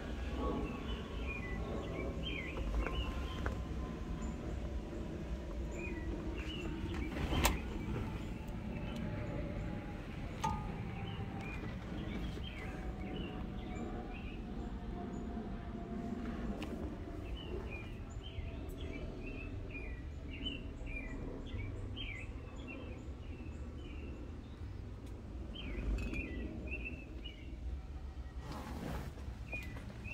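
Outdoor ambience: small birds chirping again and again over a steady low rumble, with a faint tone sliding slowly down in pitch through the first two-thirds, and a sharp click a little past seven seconds in.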